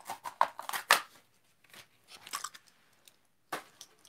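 Handling noise from a plastic blister-carded toy car package and a die-cast model: a quick run of crinkles and clicks in the first second, then a few scattered ones, with a last short cluster near the end.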